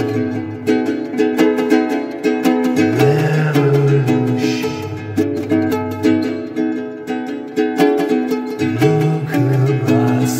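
Instrumental stretch of a song: a ukulele strumming chords in a steady rhythm over a low bass part.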